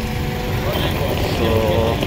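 Busy road traffic: a steady low rumble of motorbike and other vehicle engines passing close by.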